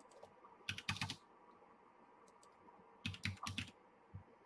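Keystrokes on a computer keyboard in two short bursts of quick clicks, about a second in and again about three seconds in.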